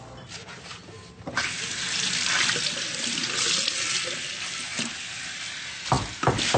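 Water running steadily, as from a tap, coming on suddenly about a second in.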